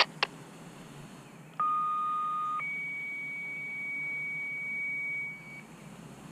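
Two-tone sequential fire dispatch page coming over a handheld scanner radio: two clicks at the start, then a steady lower tone for about a second, switching straight to a higher tone held for about three seconds, the alert that precedes a fire dispatch call.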